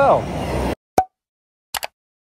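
Edited sound effects over dead silence: a single pop about a second in, then a quick cluster of clicks near the end, like a mouse-click effect on a subscribe-button animation.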